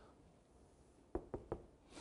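Three quick, light taps a little over a second in, a marker knocking against the board.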